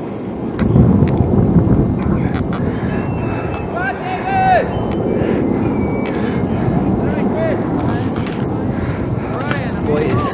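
Low, steady wind rumble on the camera microphone with scattered handling knocks, and a distant voice calling out about four seconds in.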